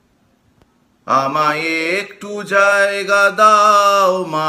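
A man chanting in long, held notes, starting about a second in after near silence, with a short break near the middle.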